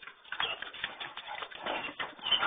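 A German shepherd's paws striking the ground as it moves off at a trot, a quick irregular patter of footfalls that starts about a third of a second in.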